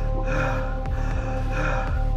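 A man gasping for breath twice in heavy, open-mouthed breaths, dripping wet and winded, over a sustained music score.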